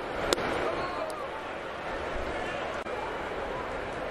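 A pitched baseball popping into the catcher's mitt once, sharply, about a third of a second in, over a steady ballpark crowd murmur.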